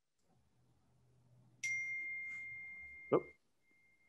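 A single ding: a clear high tone that starts suddenly and fades away over about a second and a half. A short low sound comes near its end, then the same tone again more faintly.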